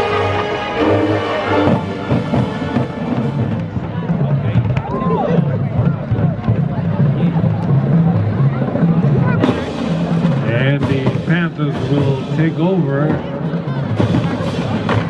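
High school marching band music: a held brass chord at first, then a drumline's bass drums and percussion keeping a steady beat. About two-thirds of the way in, sharp percussive hits and people's voices, shouting or chanting, join in over the drums.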